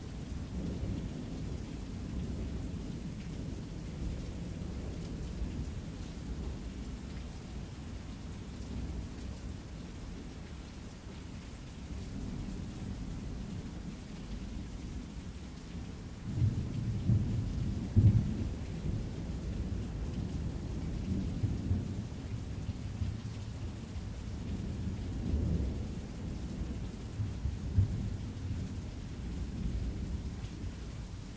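Rain-and-thunderstorm ambience: steady rain under a low rumble of thunder. The rumble swells into louder rolling peals about halfway through and again near the end.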